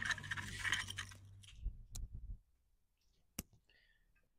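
Light clinking and scraping of a stone mortar and a metal tea infuser as crushed spices are tipped into the infuser, dying away after about two seconds. A single sharp click comes near the end.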